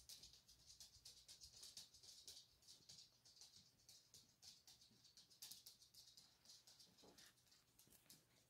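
Near silence, with faint, irregular soft rustles and light ticks from felt leaf cut-outs being handled and laid on a mat.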